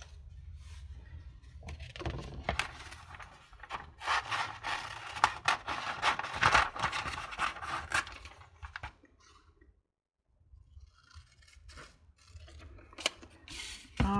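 Magazine paper being handled and cut out with scissors: rustling paper and rapid scissor snips, densest in the middle, with a few light clicks near the end.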